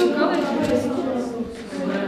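Women talking: speech only, with no other sound standing out.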